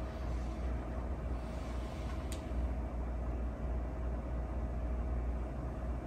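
Quiet meeting-room background: a steady low hum with a faint steady tone above it, and a single sharp click about two seconds in.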